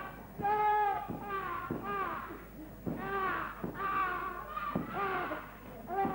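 A voice crying out in a rapid series of high, wailing cries, each under a second long and often falling in pitch at its end.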